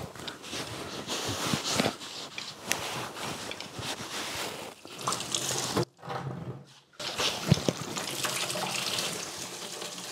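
Coolant splashing and running out of the lower radiator hose as it is pried loose from the radiator outlet, mixed with the scrape and click of a screwdriver working at the rubber hose. The sound drops out briefly about six seconds in.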